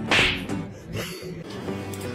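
A short, sharp whip-like swish about a quarter of a second in, over background music with plucked low notes.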